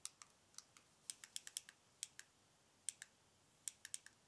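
A string of faint, sharp, irregular clicks over near silence, bunched most densely about a second in, like typing on a keyboard.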